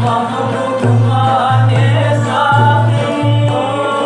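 Khowar folk ghazal: a man singing with long-necked Chitrali sitars plucked in accompaniment, over a steady low beat of about two pulses a second.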